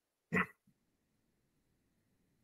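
A single short, pitched cry, about a quarter of a second long, a third of a second in.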